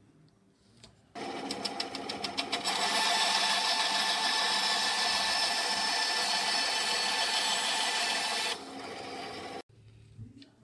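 Bench-top band saw cutting a thin merbau strip: the saw comes in about a second in with fast ticking at first, then cuts steadily. Near the end it drops to a quieter free-running sound as the cut finishes, then cuts off suddenly.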